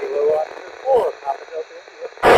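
Another station's voice received over the FM amateur-satellite downlink and heard through the Icom IC-2730A transceiver's speaker: thin, narrow and noisy, in two short snatches.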